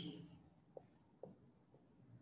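Near silence with a few faint, short squeaks of a marker pen writing on a whiteboard, about one every half-second.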